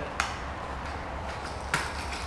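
Two short clicks, about a second and a half apart, as a popper fishing lure is handled in the hands, over a low steady hum.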